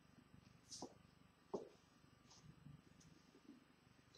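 Near silence: room tone, with a few brief faint knocks or rustles, the loudest about one and a half seconds in.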